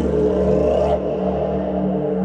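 Ambient meditation music with sustained drone tones. A sudden noisy whoosh swells in at the start and fades out about a second in, while the drones carry on.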